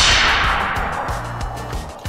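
Edited-in magic-spell sound effect: a sudden loud burst that fades away in a hiss over about a second and a half.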